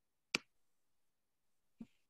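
A single short, sharp click about a third of a second in, then a faint brief sound shortly before speech resumes, against otherwise dead silence.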